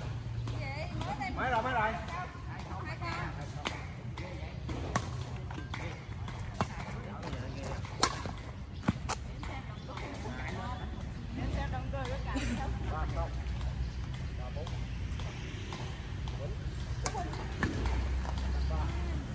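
Badminton rackets striking a shuttlecock in an outdoor doubles rally: sharp cracks a second or two apart, the loudest about eight seconds in, with another near the end.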